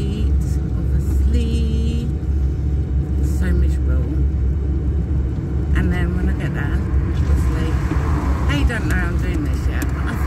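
Steady low rumble of a mobility scooter driving, heard from inside its enclosed cab, with a voice singing in short wavering snatches over it.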